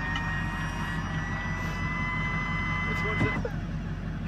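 A military vehicle's engine running with a steady low drone and a high steady whine that rises slightly and cuts off a little over three seconds in.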